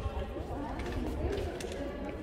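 Indistinct voices of several people talking around the microphone, no clear words, over a steady low rumble.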